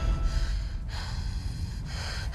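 A low, steady rumble from the trailer soundtrack's sound design, left behind when the music cuts off, with two faint brief noises over it.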